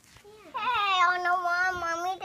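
A young child's voice holding one long, high, drawn-out note, sung or wailed, starting about half a second in and lasting about a second and a half.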